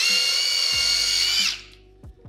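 Ryobi One+ cordless drill boring a quarter-inch pilot hole through a 2x4: a high steady whine that starts suddenly, runs about a second and a half, then winds down as the trigger is released.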